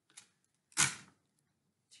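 Clear tape pulled from a desk tape dispenser and torn off on its cutter: one short, sudden rasp near the middle, with a couple of faint ticks around it.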